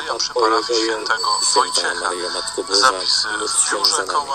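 A radio broadcast: a voice speaking continuously, with music underneath.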